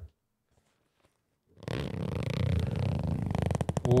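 Zipper of a pink fabric cosmetic bag pulled slowly open close to the microphone, a dense rasp of fine ticks that starts about a second and a half in and quickens near the end.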